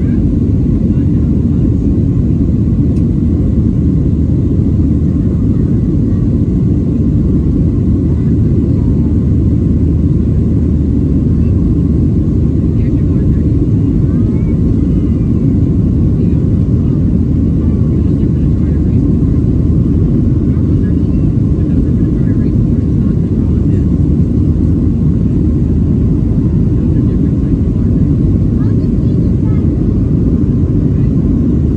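Boeing 737-700 cabin noise heard from a window seat during the climb after takeoff: a steady, loud low rumble of the CFM56-7B engines at climb thrust and the airflow over the fuselage.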